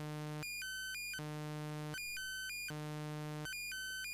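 Doepfer Eurorack modular synthesizer oscillator playing an LFO-driven sequence. It alternates between a low buzzy note and a higher, thinner note about every three-quarters of a second, at a steady level.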